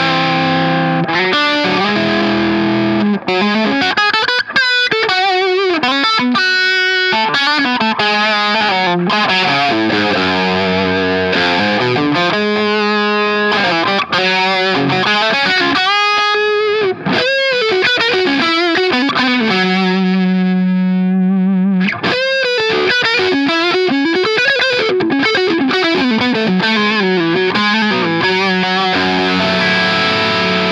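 Humbucker-equipped electric guitar played through an engaged Maxon Apex808 (TS808-style) overdrive pedal: a continuous overdriven lead line full of string bends and wide vibrato. About two-thirds of the way through, one note is held for several seconds with vibrato.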